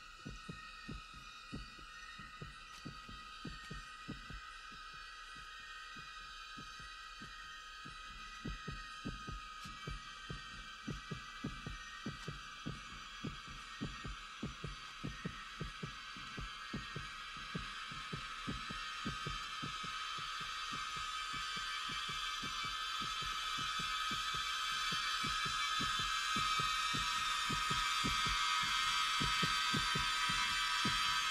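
Film soundtrack of slow, steady heartbeat-like thumps, about two a second, under a high, shrill drone of night jungle insects. The drone swells and grows steadily louder across the stretch as the tension builds.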